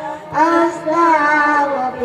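A woman singing a devotional chant into a microphone in long held notes, with a short break just after the start before the next phrase.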